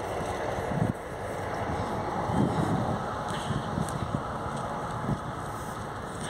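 Wind buffeting a phone's microphone outdoors: an uneven low rumbling rush with several stronger gusts.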